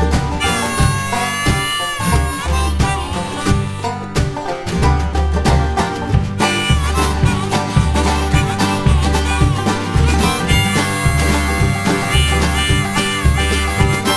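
Bluegrass string band playing an instrumental break: a neck-rack harmonica carries the lead with held, bending notes over banjo, mandolin, acoustic guitar, upright bass, kick drum and snare, with the bass notes pulsing steadily underneath.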